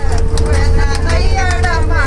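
A group of women singing together and clapping their hands, over the low rumble of a moving bus and a steady hum.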